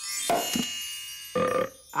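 Cartoon magic-spell sound effect: a high twinkling shimmer as the wand's spell takes hold, with a short low croak early on and a second, longer pitched croak about one and a half seconds in, as a person is turned into a frog.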